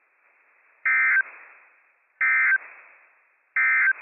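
Emergency Alert System SAME end-of-message data burst sent three times: three short, identical buzzy two-tone chirps about a second and a half apart, marking the end of the weekly test. Received over a weather radio, with faint hiss between the bursts.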